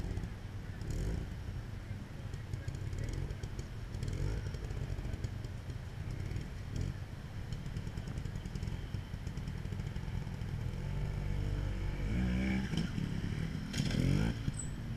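Trials motorcycle engine running at low revs with short throttle blips, revving up more strongly and louder near the end.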